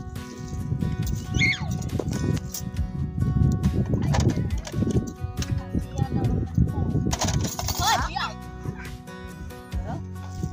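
Background music with steady held tones and some voices, over a loud, irregular low rumble.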